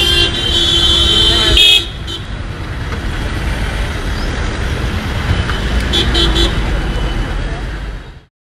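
A car horn blows one long blast lasting nearly two seconds, then sounds again in a few quick short toots about six seconds in, over a steady rumble of street traffic and engines.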